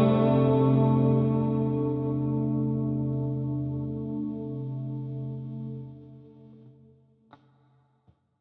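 Electric silent cümbüş, a Turkish fretless plucked lute with a wooden top in place of skin, heard through its pickup, letting its last struck chord ring on and slowly fade away over about six seconds. A faint click follows near the end.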